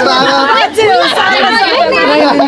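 Several people talking at once in close, lively chatter.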